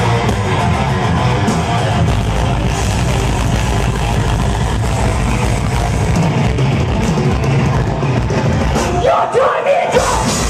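Thrash metal band playing live at full volume, heard from in the crowd: distorted electric guitars, bass and drums in a dense, unbroken wall of sound. Near the end the bass and drums drop out for a moment under a sliding high note.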